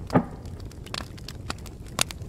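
Grill fire crackling under meat: scattered sharp pops and cracks, with one louder sudden sound just after the start.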